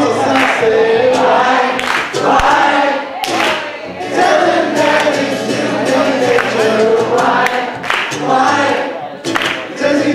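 Live acoustic guitar accompanying male voices singing through microphones, continuous throughout.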